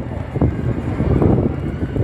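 Low engine and road rumble of a red double-decker bus approaching at low speed, within steady city traffic noise.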